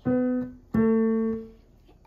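Two single piano notes stepping down, B then A, closing a descending A major scale. The second is struck a little under a second in and left to fade.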